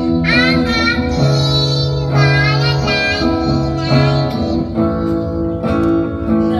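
A young girl singing a slow melody, accompanied by a man playing an acoustic guitar.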